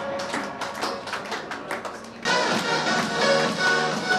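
Background music with a quick run of short percussive, plucked strokes; it fills out and gets louder a little over two seconds in.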